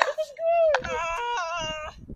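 A high-pitched, drawn-out human voice without words, wavering at first and then held on a steady pitch with a couple of sudden steps, fading just before the end. There is one short click a little under a second in.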